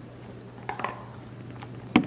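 A chow chow eating from a stainless steel bowl: a few small clicks and crunches from the food and bowl, with a sharper knock near the end, over a low steady hum.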